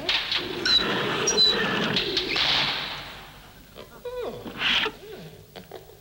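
Cartoon-style sound effects: a loud rushing noise with a few short high chirps for the first two and a half seconds, then a quick falling whistle-like glide about four seconds in.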